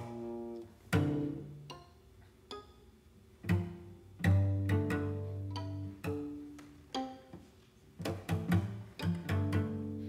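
Cello and violin playing plucked (pizzicato) notes mixed with some bowed held low notes, scattered at first and coming faster from about eight seconds in.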